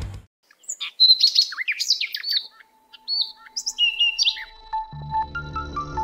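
Small birds chirping and whistling, a busy run of short high calls lasting about four seconds. Background music with a low bass comes in about five seconds in.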